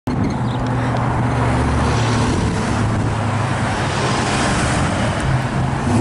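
2008 Dodge Challenger SRT8's 6.1-litre HEMI V8 running at low speed with a steady deep note, and road noise rising toward the end as the car rolls past.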